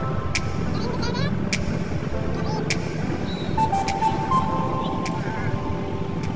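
Background music with sustained notes and a sharp beat about every second, over a steady rumble of road noise inside a moving car.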